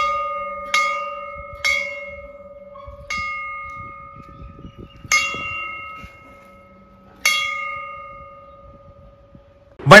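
Hanging metal bell rung by its cord, struck about five times at uneven intervals. Each strike rings out with a steady, clear tone that slowly fades.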